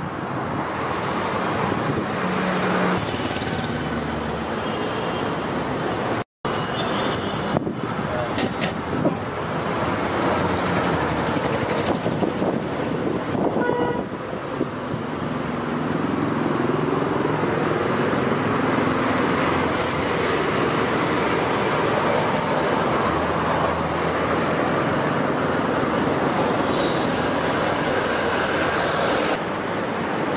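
Roadside traffic noise: a steady wash of passing vehicles, with an engine rising in pitch near the middle. The sound cuts out for an instant about six seconds in.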